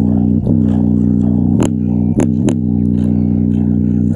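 A JBL Charge 4 portable Bluetooth speaker with its grille off plays a deep bass line loud, its passive radiators pumping hard. The held low notes change every second or so, and a few sharp clicks cut through, three of them close together near the middle.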